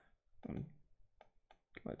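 A few faint computer mouse clicks in the second half, with a brief low vocal sound about half a second in.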